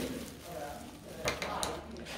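Thin plastic bag crinkling and rustling as it is handled around a foam ball, with a few sharper crackles in the second half.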